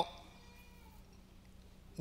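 The tail of a man's spoken word right at the start, then a pause of faint room tone with a low steady hum.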